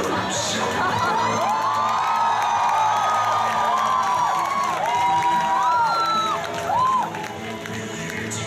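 Concert audience cheering and screaming in many high voices at once, over a steady low background music drone; the screaming dies down about seven seconds in.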